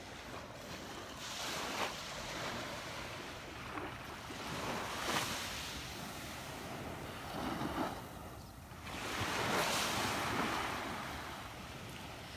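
Small, calm waves washing up and draining back on the sand at the water's edge, the wash swelling and fading every few seconds, with some wind on the microphone.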